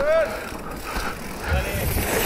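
A mountain bike coasting on a paved path, its tyres rolling with a low rumble that swells near the end.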